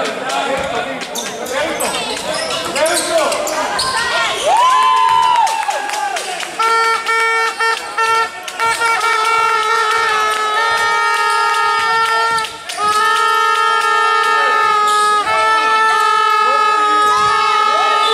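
Shouting and chatter from players and spectators in a gym. From about a third of the way in, a horn sounds in long, steady blasts at one fixed pitch, a few short ones and then several lasting a few seconds each, with brief breaks between them.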